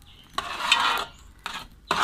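Steel spoon stirring and scraping thick jackfruit halwa around a wide metal pan: one long scrape in the first second and a brief second one shortly after.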